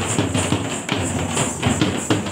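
Drums beating a fast, even rhythm of about six strokes a second, with a steady jingling hiss above it.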